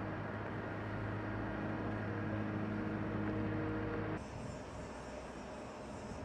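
Steady low machine hum with a few even, unchanging tones. About four seconds in it cuts off to a quieter background with a faint high hiss.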